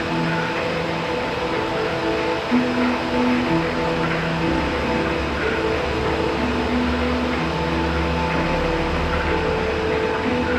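Ambient music: slow held tones shifting from note to note over a haze of noise. A low drone fades out near the start and swells back in about halfway through.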